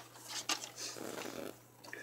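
Paper trimmer's blade carriage sliding along its rail and cutting through a strip of cardstock: a click about half a second in, then a soft scraping run that stops about a second and a half in.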